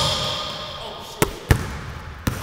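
A basketball bouncing on a hardwood gym floor: a bounce right at the start with a high squeak fading over the first second, then two more bounces about a quarter second apart a little past a second in.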